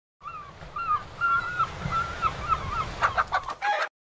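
A bird's short repeated calls, about three or four a second, over a low background rumble, with a louder flurry near the end before the sound cuts off abruptly.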